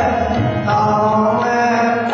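Sikh kirtan: harmonium drones and melody with chanted singing, accompanied by tabla.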